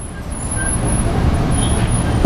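Steady rumbling background noise, strongest in the low range, growing slightly louder over the two seconds; the kind of sound road traffic makes.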